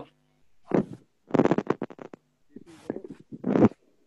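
A voice coming through a video call in broken, choppy fragments: a few short bursts cutting in and out with dead silence between. The signs of a poor connection on the caller's line.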